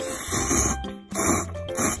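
A person slurping cup ramen noodles in three noisy pulls, the first the longest, over background music.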